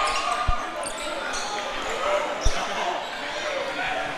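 Two bounces of a basketball on a hardwood court, about two seconds apart, over the steady murmur of the crowd in the gym.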